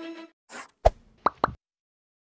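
Background music cuts off, then a short swish and three quick pops in under a second, the last two gliding upward in pitch: a cartoon-style sound effect for an animated channel logo.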